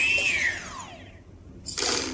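Brushless motor briefly spinning up and winding down: a whine that rises for a moment, then falls in pitch and fades over about a second. This is the single motor rotation that is normal when the Byme-A flight controller finishes attitude calibration. A short hiss follows near the end.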